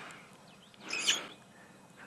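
A Burchell's starling giving one short call about a second in.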